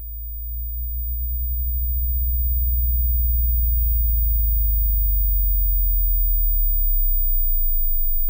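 Deep, low drone in the soundtrack, swelling up over the first two or three seconds and then holding steady.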